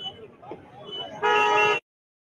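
A vehicle horn honks once, loud, for about half a second over the chatter of a street crowd, and then the sound cuts off abruptly.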